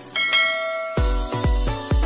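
A bell-like notification chime rings out and fades. About a second in, electronic music with a heavy bass beat of about two beats a second comes in.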